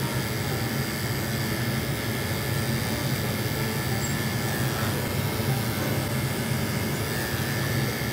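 Corded electric dog-grooming clippers running with a steady hum as they shave the fur under a dog's paw pads.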